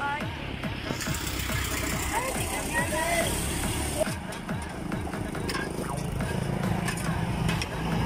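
Road traffic rumbling past under background music with singing, with voices now and then.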